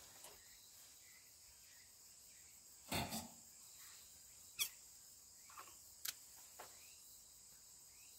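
Faint, steady insect chorus, with a few short clicks and rustles from scissors snipping and handling leafy prickly ash (sancho) fruit sprays.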